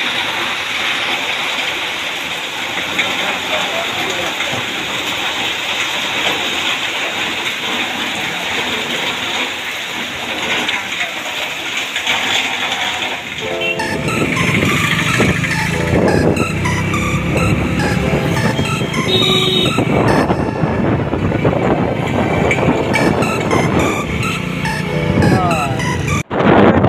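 Heavy rain pouring down steadily for roughly the first half. About halfway through, background music with a beat takes over.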